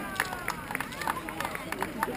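Roadside race spectators cheering and calling out, several voices overlapping, with scattered sharp hand claps.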